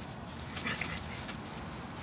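Faint sounds from a small Mini Schnauzer–Pomeranian mix puppy, a short one about half a second in, over quiet outdoor background noise.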